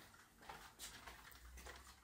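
Near silence: quiet room tone with a few faint, soft ticks.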